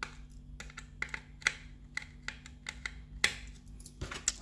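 Small precision screwdriver working at a tiny screw in a plastic model display base, making a run of light, irregular clicks as the tip turns and slips in the screw head.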